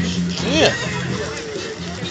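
A voice saying "yeah" with a rising-and-falling pitch over outdoor crowd chatter, with a steady low hum underneath.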